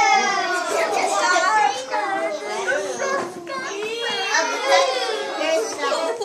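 A group of young children talking and exclaiming over one another, several high-pitched voices overlapping throughout.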